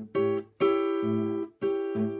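Acoustic guitar chord struck three times and left to ring, the middle strum held longest. The chord is the A7, played as a D7 shape slid up to the eighth fret.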